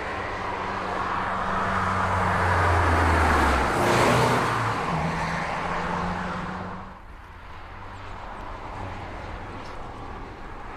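A car driving past, its engine and tyre noise swelling to a peak about four seconds in and then fading away.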